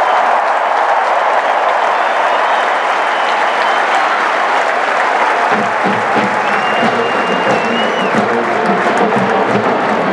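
Large stadium crowd cheering and applauding loudly and steadily. About halfway through, a rhythmic low pulsing sound joins in underneath.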